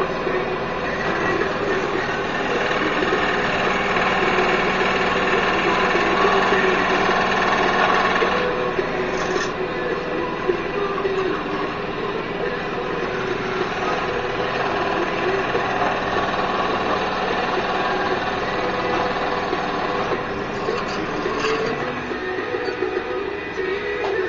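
Benchtop electric scroll saw running steadily as its blade cuts a hole in a plastic mount. The sound thins about two seconds before the end.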